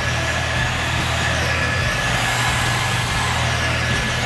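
Electric RC car driving around a concrete skatepark bowl, heard at a distance over a steady low hum and hiss.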